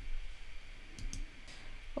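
A few faint, short clicks about a second in, over quiet room tone.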